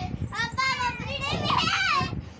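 Young children's high-pitched voices, chattering and squealing as they play, the pitch swooping up and down and loudest in the second half.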